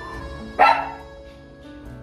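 A Rottweiler barks once, short and loud, a little over half a second in, over steady background music.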